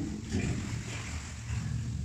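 A low, uneven rumble carried in the cave's echo, as a tour boat moves along an underground river.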